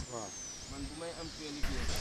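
Faint voices of people talking at a distance, with a thin, high whistle that glides down and then arches up and back near the start.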